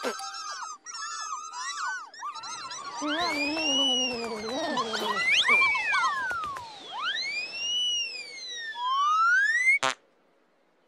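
Squeaky, high-pitched chirping chatter of the Pontipine puppets, then cartoon sound effects of the flying moustache: long whistling swoops that rise and fall in pitch, with a last rising glide and a sharp tap as the moustache sticks.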